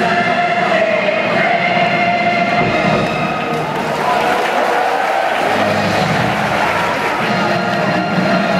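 Baseball stadium crowd noise with many voices in the stands, between two pieces of music over the PA system. New music starts about five and a half seconds in as the opening video begins.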